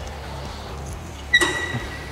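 A single sharp metallic clink about a second and a half in, ringing briefly with a clear tone, from the weight stack of a cable lat-pulldown machine during a rep. Underneath is a low steady hum.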